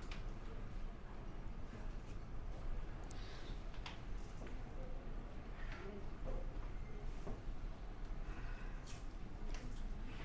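Room tone of a small indoor room: a steady low hum with a few faint scattered clicks and brief, faint fragments of voices.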